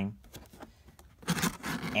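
Cardboard box flaps being pulled open, a short scraping rub of cardboard on cardboard starting about a second and a half in, after a few faint taps.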